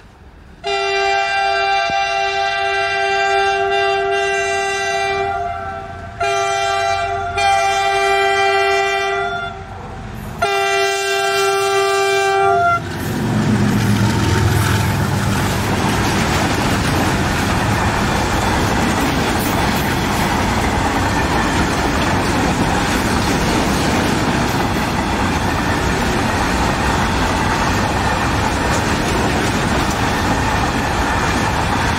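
Locomotive horn of an Indian Railways goods train sounding three long blasts, followed by the loud steady rumble and wheel clatter of covered goods wagons rolling past.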